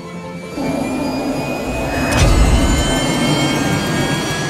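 Hyperion XP-1 hydrogen fuel-cell electric car driving past at speed: a faint rising whine over a rush of road and wind noise that swells about two seconds in. Music plays underneath.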